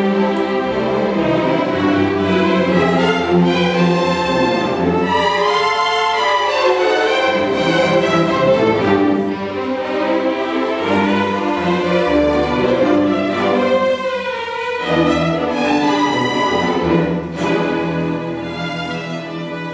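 String orchestra playing a tango, violins leading over bowed lower strings in sustained, legato lines; the sound thins briefly about fourteen seconds in before the full ensemble returns.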